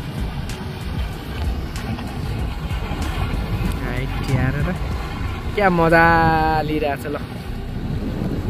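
Outboard motor of a small open boat running at speed as it passes, under a steady low rumble of wind and water. About six seconds in, a person's voice calls out one drawn-out note.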